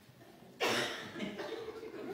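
A person coughs once, sharply and loudly, about half a second in, followed by a short stretch of quieter voice sound.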